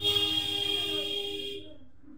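A loud, sudden horn-like blast of several steady high tones with a hiss over them, lasting about a second and a half before it stops.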